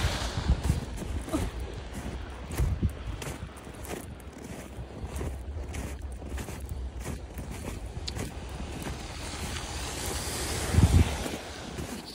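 Footsteps crunching through snow, with wind rumbling on the phone's microphone throughout and a louder low thump near the end.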